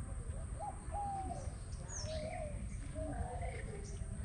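Birds calling: a string of short, wavering calls, with a brief high whistle about two seconds in, over a low steady rumble.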